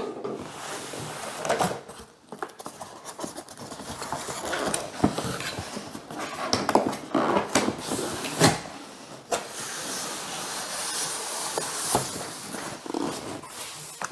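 Cardboard box being opened by hand: flaps folded back with scrapes, rustles and light knocks, and the styrofoam packing sliding against the cardboard, with a longer stretch of steady scraping near the end.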